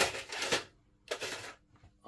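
Light handling noise of small hard objects: a short rustle followed by a couple of faint clicks.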